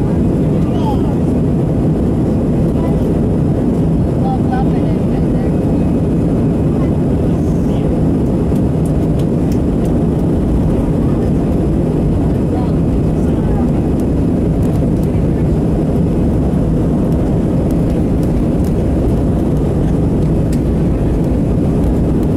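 Steady engine drone and rumble heard inside the cabin of an Airbus A319 on the ground, holding an even level with no rise in pitch.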